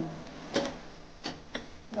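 Wooden spatula scraping and knocking against the inside of a steel pot while stirring a thick chocolate mixture: a few short, sharp scrapes and taps.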